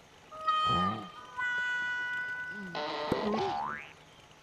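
Cartoon sound effects: a short voice-like cry about half a second in, a held steady tone through the middle, then a quick rising boing-like glide near the end.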